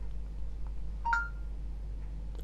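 Samsung Galaxy S III's S Voice prompt tone: a short two-note beep, rising in pitch, about a second in. It signals that the voice assistant has opened and is listening.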